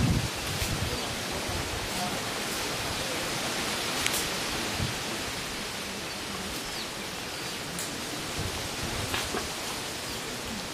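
Steady outdoor background noise, an even hiss, with a few faint clicks.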